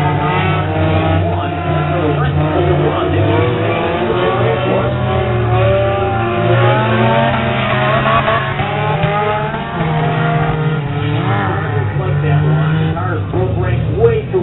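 Several figure-8 race cars' engines running hard together, their pitch rising and falling as they accelerate and lift around the track.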